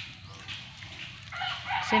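A rooster crowing, starting a little over a second in and going into a long held note.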